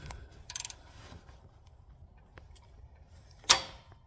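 Ford 3.5 EcoBoost engine being turned over by hand, with faint ticks, then one sharp clack about three and a half seconds in as the passenger-side intake camshaft pops forward inside its cam phaser. The phaser is broken inside, its pins stripped or similar, and this is the source of the engine's start-up clacking.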